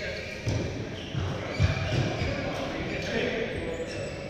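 Voices and several dull thumps on a badminton court, echoing in a large hall; the loudest thump comes about a second and a half in.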